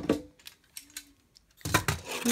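Sharp plastic clicks and clatter from things being handled inside a hamster cage: a couple of clicks at the start, then a quick run of rattling clicks near the end.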